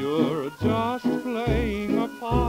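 A 1929 dance-band fox trot playing from a 78 rpm record: melody lines with a wide vibrato over bass notes sounding on the beat.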